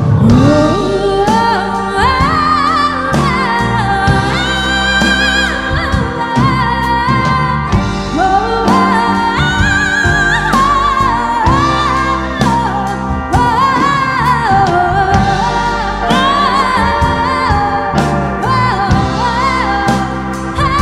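Live rock band playing with a female lead singer. She holds long, gliding notes over keyboards, bass guitar, drums and lap steel guitar.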